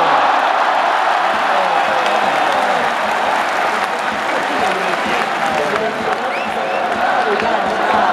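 Baseball stadium crowd cheering and applauding a base hit: a dense, steady din of many voices shouting and clapping.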